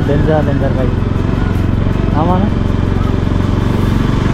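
Bajaj Pulsar NS200's single-cylinder engine running steadily at low revs as the motorcycle is ridden slowly, with a voice talking over it near the start and again about halfway.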